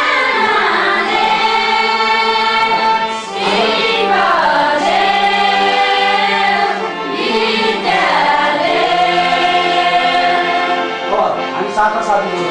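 A group of women singing a Nepali song together, in phrases of about four seconds that end on long held notes, with brief breaks between them.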